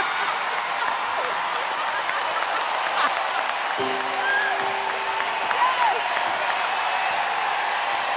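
Studio audience and judges applauding steadily.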